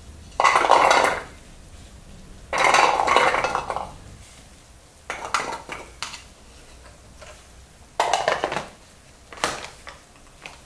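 Peeled garlic cloves dropped into a hard clear plastic chopper bowl, rattling against it in two long clatters, then several shorter clatters as more cloves go in and the plastic lid is handled.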